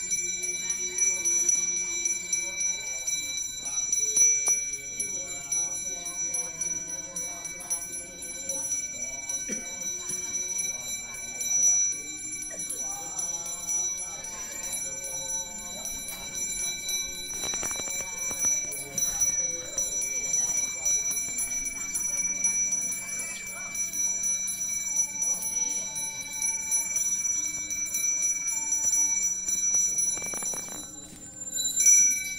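A Balinese priest's hand bell (genta) rung continuously during communal prayer, a steady high ringing that holds unbroken throughout.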